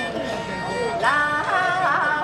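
Nanyin (Southern music) performance: a woman sings a slow, ornamented line that bends and glides in pitch, accompanied by a bamboo flute and a plucked pipa.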